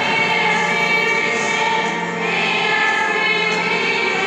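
Church choir singing a hymn in long held notes, moving to a new chord about two seconds in.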